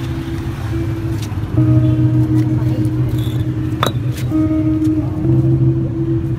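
Background music of long held notes over busy street-market noise, with a few sharp clicks and one louder knock about four seconds in.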